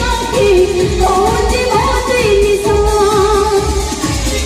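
An Odia jatra song: a solo voice singing a gliding melody over a backing track with a steady low beat.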